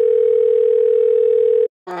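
Telephone ringback tone heard by the caller: one steady ring of a single pitch, about two seconds long, that cuts off suddenly as the call connects.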